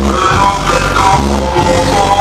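Loud Latin dance music played over a sonidero's sound system, with a steady bass line under a pitched melody.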